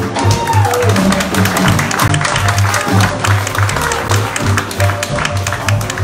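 A small jazz band playing live: the upright bass plays a steady line of low notes under piano, drums and horns, and one horn note falls in pitch early on.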